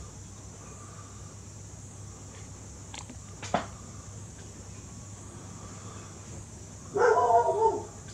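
A dog vocalising for about a second near the end, over a low steady hum, with a couple of short clicks around the middle.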